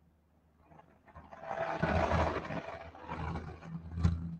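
About a second of silence, then a man's soft, breathy chuckle, loudest about two seconds in, trailing off into quieter breaths.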